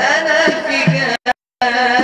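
Male voice singing Egyptian Islamic praise chant (madih) to the beat of large frame drums, with drum strokes about half a second and a second in. The sound cuts out completely for a moment about a second and a quarter in, then the singing resumes.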